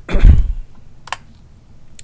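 A man clears his throat loudly just after the start, amid computer keyboard keystrokes, with a single sharp key click about a second in.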